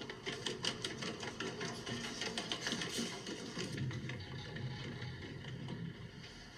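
Quick footsteps on a metal fire-escape staircase, a fast, uneven run of sharp clanks.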